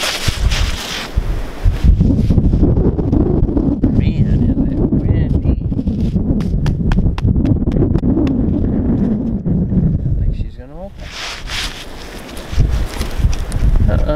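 Wind gusting against the microphone, with a run of small crackling clicks as caked snow and ice are wiped off a frozen truck's window and door by a gloved hand.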